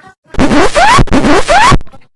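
A harsh, heavily distorted edited sound effect, very loud, with a rising pitch sweep inside a wash of noise. It plays twice back to back, starting about a third of a second in and cutting off shortly before the end.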